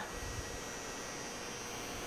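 A steady, even hum and hiss with a faint steady tone running through it, from the pedalled exercise bike and the room around it, with a brief low thump about a third of a second in.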